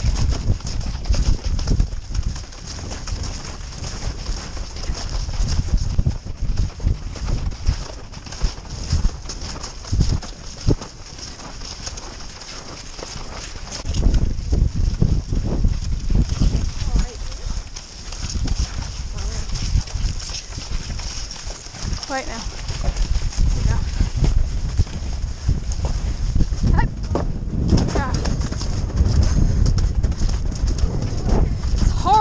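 Hoofbeats of ridden horses cantering over grass pasture, heard from the saddle of one of them. The sound grows heavier and louder about halfway through.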